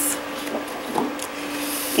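A sheet of patterned scrapbook paper rustling as it is handled and turned over: a brief rustle at the start, a light tap about a second in, and a longer swish of paper sliding over paper near the end.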